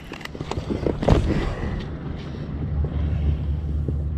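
Wind buffeting the camera microphone as a steady low rumble, strongest in the second half, with a few faint knocks near the start and about a second in.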